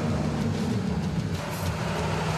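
Truck engine running steadily while the truck is driven, heard from inside the cab as a low hum with road noise.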